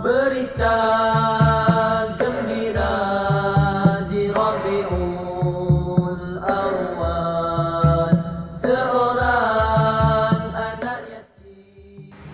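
A devotional chant, sung in long held phrases that slide in pitch, over a steady low beat. It stops about a second before the end.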